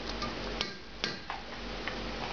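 A cooking spoon knocking and scraping lightly against the side of a saucepan as a thick curry is stirred: about five short clicks, the clearest about half a second and a second in.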